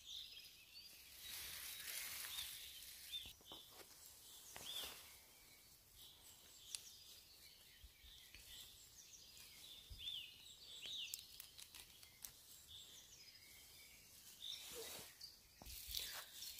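Faint woodland birdsong: small birds giving short, high chirps scattered throughout, with a few soft rustles and clicks close by.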